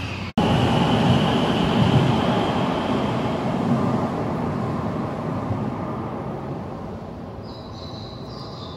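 A Keihan train rumbling in an underground station. The rumble cuts in loud just after the start, with a faint high whine over it, then fades steadily over several seconds as the train draws away.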